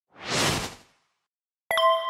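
Video-editing sound effects: a short whoosh, then about a second later a bright bell ding that strikes sharply and rings on.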